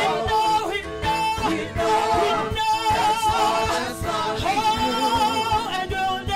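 A woman leading a gospel worship song into a microphone, holding notes with vibrato, over a band accompaniment with a steady beat.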